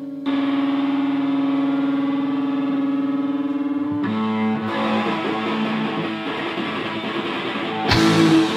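Live hard rock band playing with a distorted electric guitar: a chord held steady for about four seconds, then a change to new notes as the playing grows busier, with a loud hit near the end.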